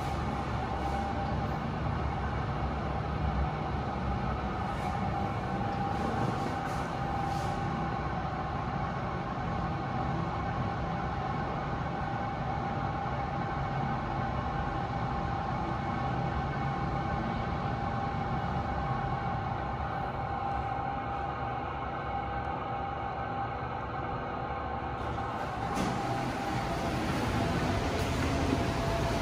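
Kone MiniSpace service lift car travelling, heard from inside the cab: a steady low rumble with a constant hum of several steady tones.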